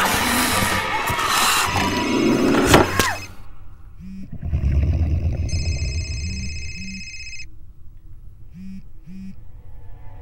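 Horror film soundtrack: a loud, noisy roar and clamour that ends in a sharp hit about three seconds in, then a quieter stretch of score with a low rumble, a held high tone for about two seconds, and short low pulses coming in pairs.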